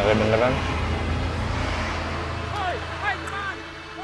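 A car driving away, its engine and tyres fading as it goes, with a few spoken words at the start.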